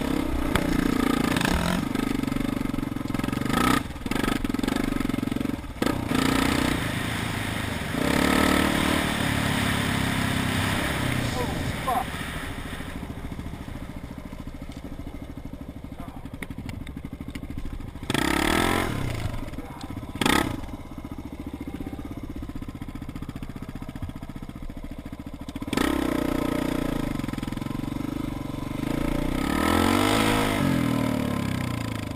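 Dirt bike engine revving up and down while riding a rough trail, with knocks and clatter from the bumps. The revs settle to a quieter, steady run for a few seconds in the middle, then climb again.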